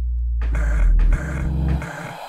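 Minimal electronic music: a deep, steady bass drone, joined about half a second in by a harsh, gritty noise layer, with the drone dropping away near the end.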